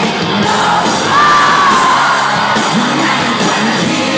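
Live rock band playing at full volume through a venue PA, heard from within the audience, with fans screaming and cheering over the music; a single high held cry or note stands out about a second in.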